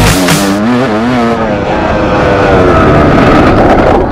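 Dirt bike engine revving up and down as the rider works the throttle over the trail, then the revs sinking away and picking up again near the end.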